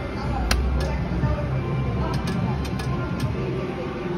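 A Wheel of Fortune reel slot machine spinning a $5 bet, with several sharp clicks as it plays out (one about half a second in and a cluster around two to three seconds). Behind it is steady casino-floor noise of machine music and chatter.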